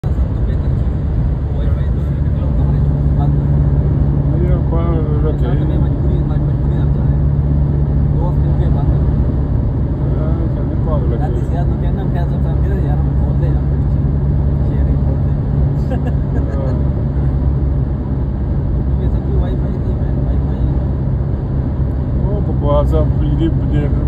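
Steady road and engine rumble heard inside a car's cabin at highway speed, with low, indistinct voices now and then.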